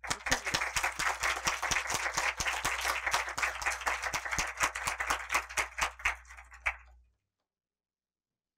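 Audience applauding, thinning out and stopping about seven seconds in.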